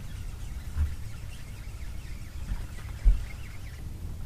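Low rumble of wind on an open boat's camera microphone, with a few dull thumps, the loudest just before one second in and just after three seconds in.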